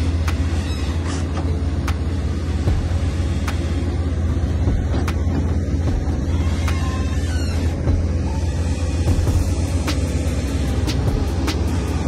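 Diesel engine of a Komatsu PC200 long-reach excavator running under work, a steady low rumble.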